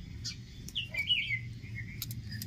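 A small bird chirping in short, quick calls that bend up and down in pitch, a cluster of them about a second in.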